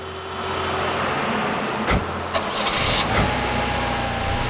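A Toyota SUV's engine running as the vehicle moves off slowly, with sharp knocks about two and three seconds in.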